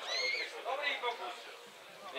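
A short, high whistle-like call that rises and then falls, over distant voices on the pitch.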